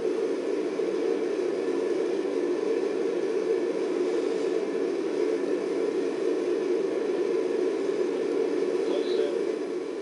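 Steady roar of NASA's QM-1 five-segment solid rocket booster firing in a static test, played through a screen's speaker, so it sounds thin and muffled with little deep rumble.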